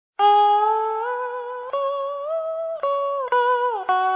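Solo blues guitar playing a slow opening phrase: about five picked single notes, each left to ring, with slides and bends in pitch between them.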